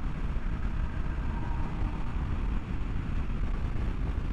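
Steady low wind rumble on the microphone of a motorcycle, a 2019 Triumph Scrambler 1200 XE, ridden at highway speed, mixed with the bike's running and road noise.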